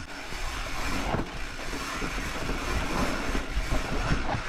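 Mountain bike rolling fast down a dirt singletrack: steady wind rush over the microphone and tyre noise, with the odd faint click and rattle from the bike.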